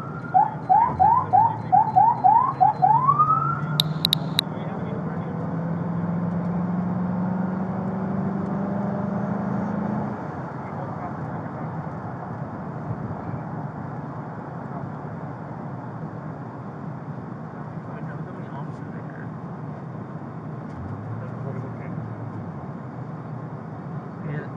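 A police siren gives a quick run of rising yelps for about the first three seconds, ending in one longer rising sweep. Then a low engine hum climbs slowly in pitch for several seconds as the patrol car accelerates, giving way to steady road noise inside the car's cabin.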